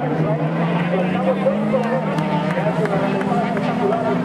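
Motorcycle-engined carcross buggies running past on a dirt track, their engine note rising a little mid-way, with a voice heard underneath.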